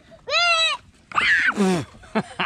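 Goat bleating twice: a short arched call, then a longer one that starts high and slides steeply down in pitch.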